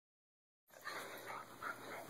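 Faint breathing and snuffling of a small dog close to the microphone, starting a little under a second in after silence.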